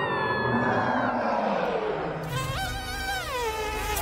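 A cartoon bumblebee buzzing as it flies in. The buzz comes in about two seconds in, steps up in pitch, holds, then slides back down. Before it, near the start, a person cries out in a falling voice.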